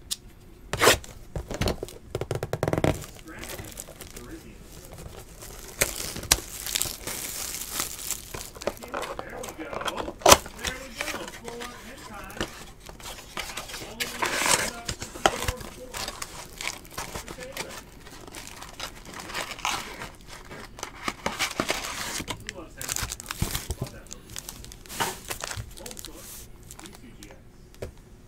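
Cardboard trading-card blaster box being torn open and its wrapping crinkled, with rustles and sharp clicks of handling. Longer stretches of tearing and crinkling come about six seconds in and again about fourteen seconds in, with a sharp snap about ten seconds in.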